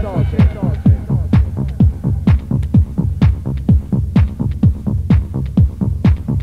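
Electronic dance music from a club DJ mix: a steady four-on-the-floor kick drum, about two beats a second, with hi-hats. A melodic line fades out in the first half second, leaving the beat almost bare.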